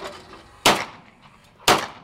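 Two shots from a Saiga 12 semi-automatic 12-gauge shotgun firing low-brass shells, about a second apart, each a sharp report with a short echo.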